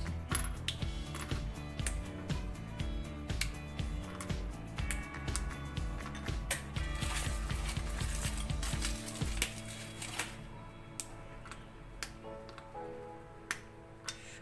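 Background music, with many small sharp snaps and crinkles: squares of a white chocolate bar being broken off and pulled from their foil wrapper, then dropped into a glass bowl.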